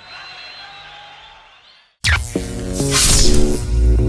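The live band's sustained closing notes fade away to silence, then about halfway through a loud electronic logo sting begins: a whoosh followed by heavy deep bass and a short run of synthesized notes.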